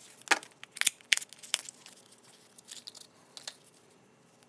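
Small paperboard box being opened and handled by hand, its card flaps crackling. There are several sharp crackles in the first two seconds, then fainter rustling.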